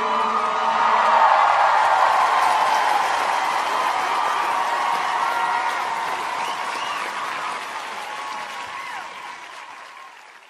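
Concert audience applauding and cheering, with scattered whoops and shouts, as the last notes of the song die away about a second in. The applause fades out steadily toward the end.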